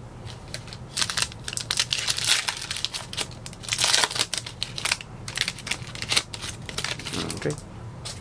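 Foil-lined wrapper of a Panini Donruss Optic trading-card pack crinkling and tearing as it is pulled open by hand, in quick irregular crackles, loudest about halfway through.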